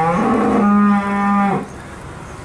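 A cow mooing: one long call that rises in pitch, holds steady, then stops about one and a half seconds in.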